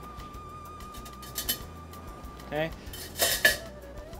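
Metal kitchenware and plates clinking during plating: a light clink about a second and a half in, and a louder cluster of clinks near the end. Soft background music holds one long note underneath.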